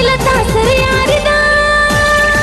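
Pashto film song: music with a woman singing, gliding between notes and then holding a long note from about a second in.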